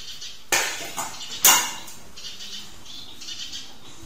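Handling knocks: two sharp clattering knocks about a second apart, each with a short scraping tail, as the bonsai trunk on its stand is moved. A small bird chirps faintly in the background.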